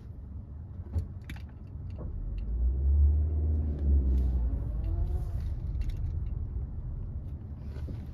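A manual-transmission car's engine heard from inside the cabin: a deep rumble swells about two seconds in, peaks, then eases off, with the pitch rising and falling once as a learner driver works the clutch and throttle.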